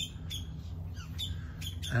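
Wild birds calling outdoors: a series of short, high calls coming about every half second, over a low steady background hum.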